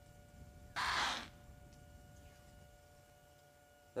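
An impala's alarm snort: one short, sharp blast of breath about a second in, the herd's warning of a possible predator.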